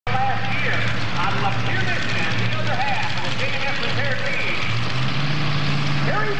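Multi-engine modified pulling tractor idling with a steady low drone that steps up a little in pitch about five seconds in, under a public-address announcer's voice.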